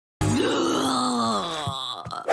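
A voice moaning: one long moan that rises briefly, then sinks slowly in pitch.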